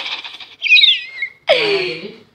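A baby's high-pitched vocalising: a rising wail that trails off just after the start, a squeaky squeal around the first second, and a falling cry near the end.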